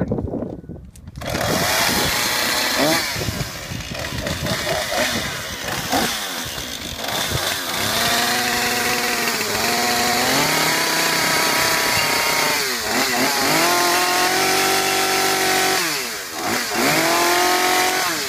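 Husqvarna two-stroke chainsaw starting about a second in, then running and being revved up and down again and again, its pitch rising and falling and holding steady between revs.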